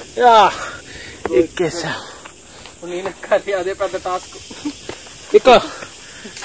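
A man's voice in short, pitched bursts close to the microphone, with breathy hissing around them, as from hard breathing under exertion. There is a quick run of short sounds about three to four seconds in.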